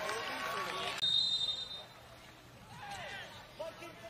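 Indistinct shouts and voices from players and spectators around a soccer pitch, picked up by field-level microphones. A brief, thin, steady high tone sounds about a second in.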